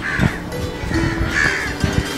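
A crow cawing twice, once at the start and again about a second and a half in, over background music.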